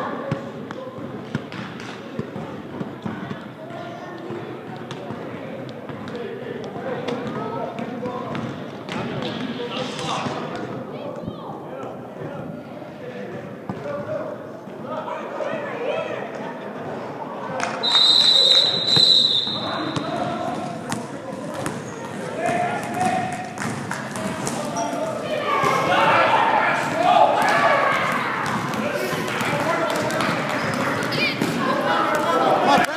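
A basketball bouncing on a gym floor while players run and spectators talk and call out. About eighteen seconds in, a single shrill whistle blast, held for over a second, is the loudest sound.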